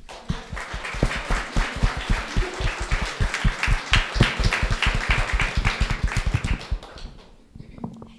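Audience applauding. The clapping starts all at once and fades out about seven seconds in.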